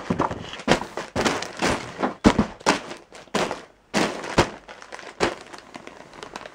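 Close handling noise of packages on a desk: a plastic mailing satchel crinkling and packages bumping, in about a dozen irregular knocks and rustles.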